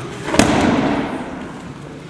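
A person thrown in an aikido throw lands on the tatami mats in a breakfall: one loud, sudden thud about half a second in that dies away quickly.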